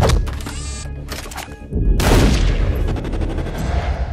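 Trailer sound design: a quick run of gunshot-like hits followed by a big boom about two seconds in, over trailer music.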